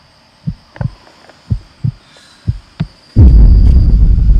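Heartbeat sound effect: three slow lub-dub double thumps, about one a second. Near the end a sudden loud low rumble cuts in.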